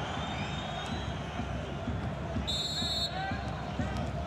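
Steady crowd noise from a packed football stadium. About two and a half seconds in, a referee's whistle gives one short blast, the signal that the set piece can be taken.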